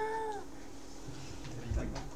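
A single drawn-out high-pitched vocal call, rising and then falling in pitch, fading out about half a second in.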